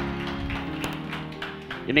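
Soft background music of sustained, held notes changing pitch once or twice, with a man's speaking voice returning near the end.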